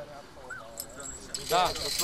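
Men talking in short snatches, one voice loud near the end, with a high steady hiss or jingle joining about a second and a half in.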